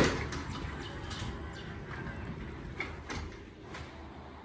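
A single cough at the start, then low outdoor background noise with a few faint knocks.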